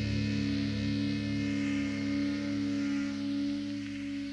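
Rock band's guitar chord held and ringing steadily, without strumming or drums, fading a little near the end.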